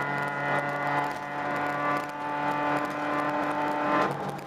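Engine of a Volkswagen Mk2 Jetta rally car, heard from inside the cabin, holding a steady high note under load with scattered clicks from the stage road. The note drops suddenly at the end.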